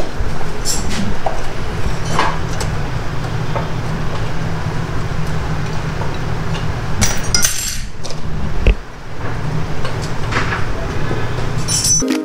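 Scattered metallic clinks and taps of a T-handle wrench working the air filter fastening on a Royal Enfield motorcycle, over a steady low hum.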